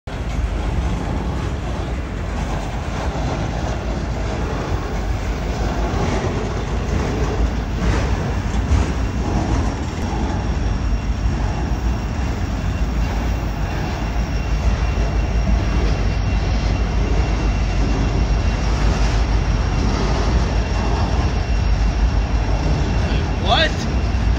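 Freight train's autorack cars rolling past: a continuous, steady rumble of steel wheels on rail.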